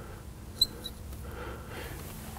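Marker squeaking faintly on glass as it writes, in two short high chirps about half a second in, over faint room tone.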